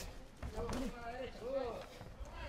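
Faint men's voices shouting short calls over low arena room noise, with a brief burst of noise about half a second in.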